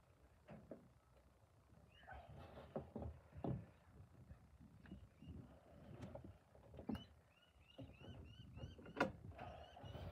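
Faint, scattered crunching and soft taps of hands crumbling and pressing damp casting sand into a metal mould flask.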